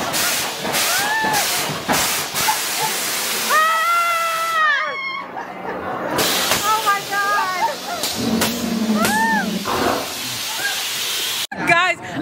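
Earthquake-simulator ride running in the dark: a loud, constant hiss and rush from the ride's effects, with riders crying out in short rising-and-falling exclamations and one long held cry about four seconds in.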